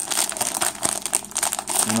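Plastic wrapper of a basketball trading-card value pack crinkling in a quick run of irregular crackles as it is handled.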